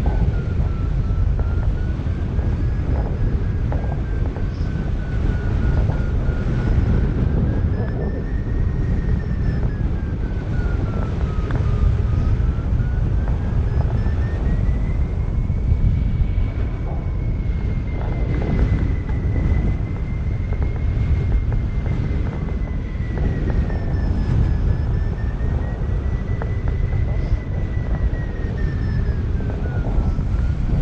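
Strong wind rushing over the microphone of a hang glider in flight, a steady low buffeting rumble. Over it runs one thin high tone that drifts slowly up and down in pitch.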